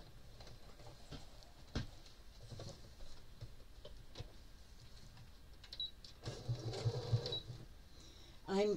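Electric sewing machine stitching in a short run of about a second near the end, after a single click and faint handling sounds.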